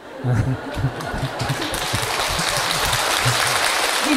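Audience laughing and applauding, the clapping swelling up in the first half second and then holding steady.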